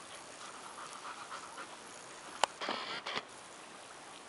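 A dog panting quickly and softly while tugging on a knotted rope toy. About two and a half seconds in there is a sharp click, then a short noisy rustle with a couple more clicks.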